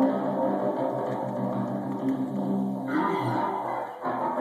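Custom electric guitar with an aluminum pickguard, played through an amplifier: held notes and chords ring out, and a brighter new chord is struck about three seconds in.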